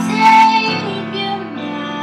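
A young woman singing, holding one note for about half a second near the start, over grand piano chords.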